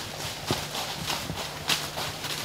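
Several horses walking on a dirt woodland trail, their hooves clip-clopping in an uneven rhythm of separate knocks.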